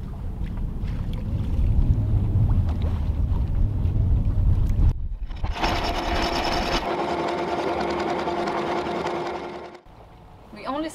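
Wind buffeting the microphone and water rushing along the hull of a sailboat under way. About halfway through, this gives way to an electric anchor windlass whirring steadily with a fast rattle of chain links as the anchor chain pays out over the bow roller. It stops shortly before the end.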